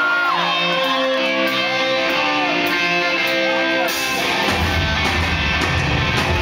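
Live rock band playing loudly. Electric guitar holds sustained notes over a sparse backing, then about four seconds in the full band comes in with heavy low end and cymbal wash.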